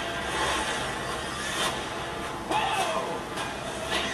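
Movie trailer soundtrack played back into the room: a car engine running amid dense sound effects and music, with a few sudden hits about a second and a half, two and a half and three and a half seconds in.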